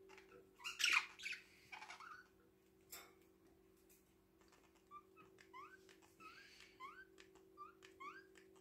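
Budgerigars calling: a loud burst of harsh squawks about a second in, then short rising chirps, about two a second, through the second half, with small clicks between them.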